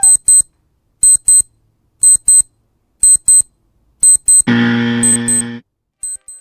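Electronic alarm clock beeping in quick double beeps, about one pair a second. A loud, low, steady buzz cuts in for about a second near the end.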